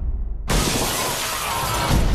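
Trailer sound design: a low rumble, then about half a second in a sudden loud crash whose noisy tail carries on over the score.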